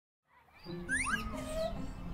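Silence for about half a second, then soft cartoon background music comes in, with a few short rising bird chirps over it about a second in.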